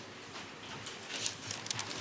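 Thin Bible pages being leafed through: quiet, scattered rustles and light ticks of paper.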